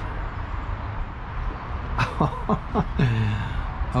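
A man laughing briefly, a few falling chuckles about two seconds in, over a steady low background rumble.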